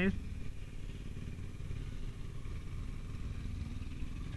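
Motorcycle engine running steadily while riding along, a low even rumble.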